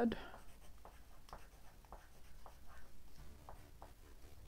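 Graphite pencil scratching on lined notebook paper while writing words by hand, in a run of short strokes.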